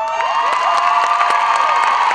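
Audience cheering for a finished dance routine: many high-pitched voices shrieking and screaming, with scattered clapping.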